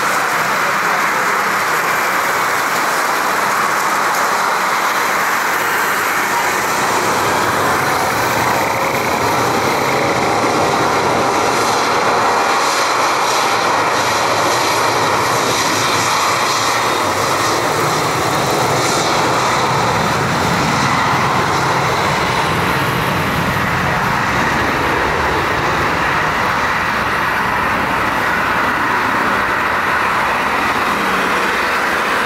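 Boeing 737-800 freighter's jet engines running loud and steady at close range on a wet runway. A deeper rumble builds from about eight seconds in as the engines spool up toward takeoff power.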